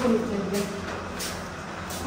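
Footsteps climbing a stairwell, a step roughly every half second or more, while a voice trails off in the first half second.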